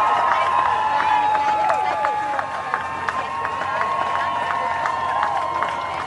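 A crowd of many voices talking and calling out at once, overlapping, with frequent short clicks throughout.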